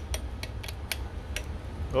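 Adjustable wrench clicking lightly against the carburetor's fuel-inlet fitting as the fuel-line nut is loosened: scattered sharp ticks over a steady low rumble.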